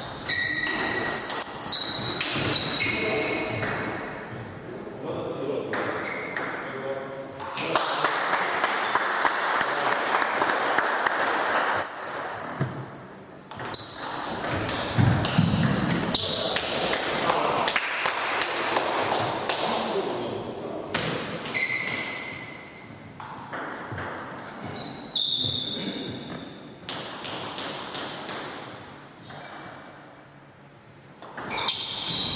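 Table tennis rallies: a celluloid ball clicking rapidly back and forth off the bats and the table, with short high squeaks of shoes on the hall floor and voices in between points.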